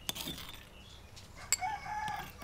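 A rooster crows in the background near the end, a single pitched call that runs past the end. Before it come a few light clicks and scrapes of a metal spoon against the stone mortar.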